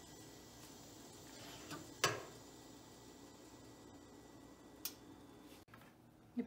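Faint room tone broken by one sharp click about two seconds in, with a lighter click near the end.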